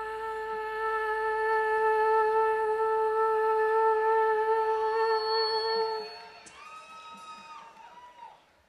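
A woman's voice holding one long, steady sung note for about six seconds, scooping up into the pitch at the start, then dropping away into softer, quieter notes near the end.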